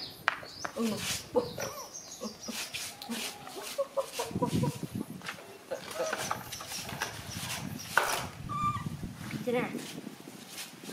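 Scattered, irregular short animal calls and small noises, with a sharp sound at about 8 seconds.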